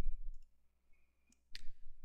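A single sharp computer mouse click about one and a half seconds in, choosing Upload from a right-click menu.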